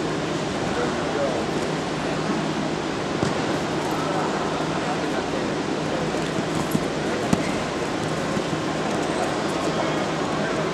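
Steady din of a large indoor sports hall: indistinct background voices over a constant wash of noise, with two light knocks about two-thirds of the way through.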